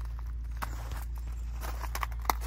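Footsteps on loose gravel: a few steps with light sharp clicks, over a steady low rumble.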